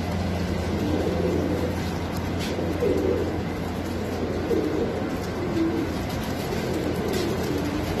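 Caged domestic pigeons cooing, repeated low coos one after another, over a steady low hum.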